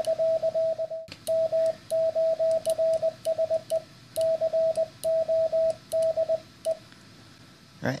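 Morse code sidetone from an electronic CW keyer worked by an iambic paddle: a steady single-pitched beep keyed on and off in dashes and dots, stopping about seven seconds in. It includes alternating dash-dot runs from squeezing both paddles, dash first.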